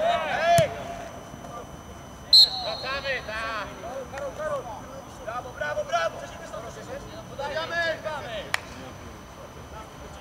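Footballers shouting to each other across the pitch, with a single short, loud referee's whistle blast a little over two seconds in. A sharp knock sounds just after the start and another near the end.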